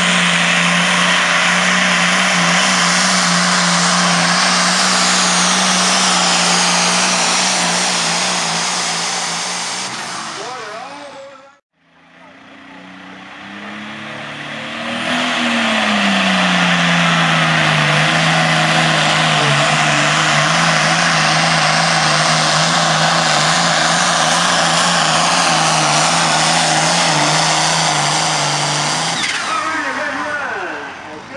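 Turbocharged diesel pulling tractors at full throttle dragging a weight-transfer sled. First a green tractor's engine holds one steady pitch, then fades out about twelve seconds in. Then a red Case IH 7210 comes up to speed, its pitch rising briefly and then dropping to a steady drone that fades near the end.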